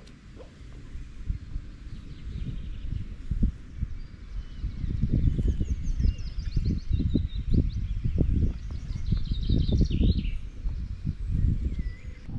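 Small birds chirping and singing, over a low, gusting rumble of wind on the microphone that grows louder after the first couple of seconds.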